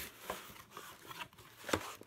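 Cardboard mailer box being opened by hand: scraping and rubbing of the flaps, with a sharp snap near the end.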